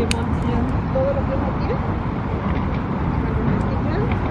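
Steady outdoor background noise, a low rumble with a hiss above it, typical of distant road traffic and wind, with a short click near the start.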